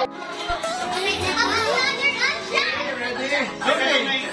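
Children's voices and chatter over music playing from a television, with the sound cutting in abruptly at the start.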